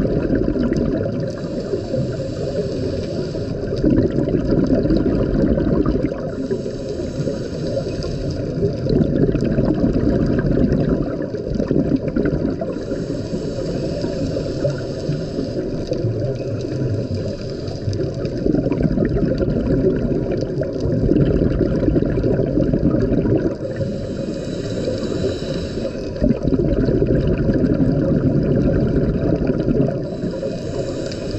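A scuba diver breathing through a regulator underwater. A hiss of inhaling alternates with a burst of exhaled bubbles, about one breath every six seconds.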